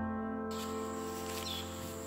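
A sustained, slowly fading music chord, with outdoor ambience coming in about half a second in: a steady high-pitched insect buzz and a faint chirp or two.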